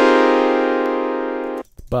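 Reason's Thor synthesizer, on a blank initialized patch, playing all the notes of the C natural minor scale at once as one held cluster chord. The block of tones fades slowly, then cuts off suddenly near the end.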